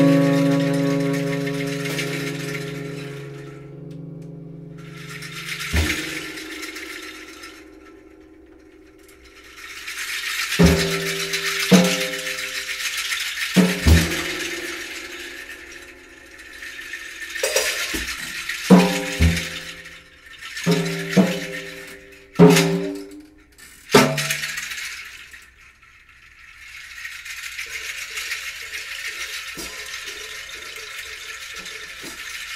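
Free-improvised group music: a sustained chord fades out, then spells of rattling, scratchy percussion noise are broken by about ten short, quickly dying plucked electric guitar notes, with a soft low tone entering near the end.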